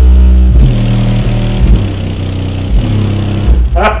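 Car-audio subwoofers playing music at high volume: a deep bass line of held low notes that change every second or so.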